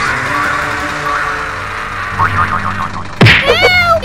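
Cartoon comedy sound effects over backing music: a hissing noise layer, then a sudden loud whack about three seconds in, followed by wobbling, sliding boing tones.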